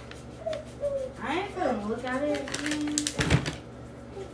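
Indistinct talking voices, then one loud, sharp knock with a low thud a little after three seconds in.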